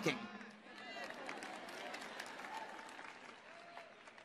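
Faint applause from a congregation, with a few scattered voices, dying away toward the end.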